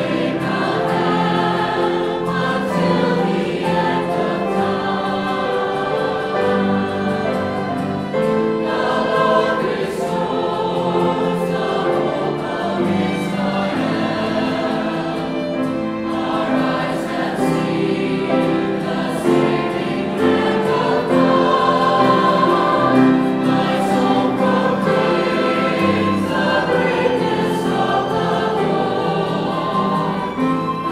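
Mixed choir of men's and women's voices singing, accompanied by piano.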